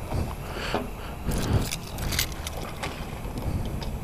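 Small handling noises, light clicks and scrapes, as a rider gets a motorcycle ready to refuel, over a steady low background hum.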